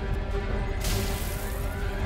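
Film music over a deep, steady rumble, with a sudden hissing rush of noise starting a little under a second in and lasting about a second.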